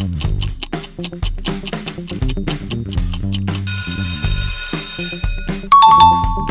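Quiz countdown-timer sound effect: rapid clock ticking, about four ticks a second, over a looping bass music bed. Then an alarm bell rings for about a second and a half as time runs out. A two-note chime sounds near the end.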